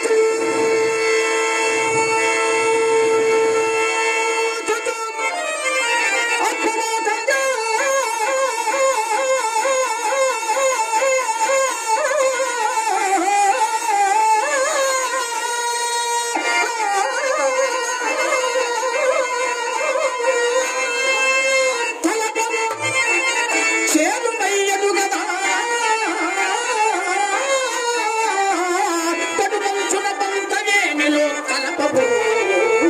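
A male stage actor singing a Telugu verse (padyam) at full voice in a Carnatic-style melody. It opens on one long held note and, from about five seconds in, moves into long, heavily ornamented, wavering phrases.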